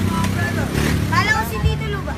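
People talking and calling out over a steady low droning hum.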